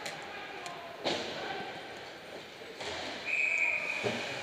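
Ice hockey game on the rink: a sharp crack about a second in, then a short, high, steady whistle blast a little after three seconds in, over voices in the rink.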